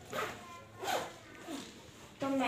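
Metal tower bolt and wooden window being worked open: three short, soft scraping sounds, a little under a second apart.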